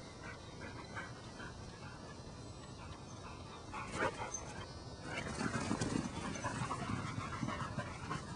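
Border collie panting close by, getting louder about five seconds in as a quick, irregular run of breaths.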